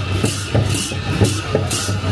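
Drum and cymbal music for a Lakhe dance, played at a steady beat: cymbal crashes about twice a second over a deep drum.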